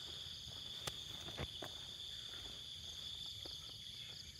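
Crickets calling in a steady, high-pitched chorus, with a few faint clicks over it.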